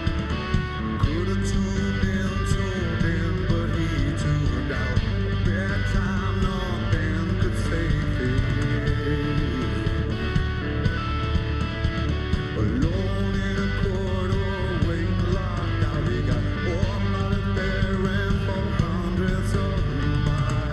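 Live rock band playing a song: electric guitars over bass and a drum kit.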